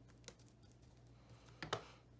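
Faint rustling and light clicks of paper scraps being handled and a brush pressing a paper strip down onto an MDF tag, with a brief louder rustle near the end.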